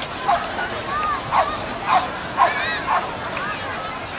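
A small dog yipping: about five short, sharp barks in quick succession over the first three seconds, with crowd chatter behind.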